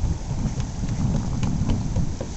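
Wind buffeting the camera's microphone: a low, uneven rush that rises and falls with the gusts.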